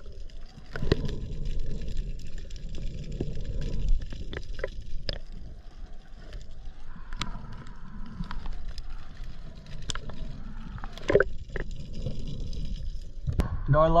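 Water sloshing and gurgling around a partly submerged action camera, dipping under and back to the surface, with scattered sharp clicks and taps.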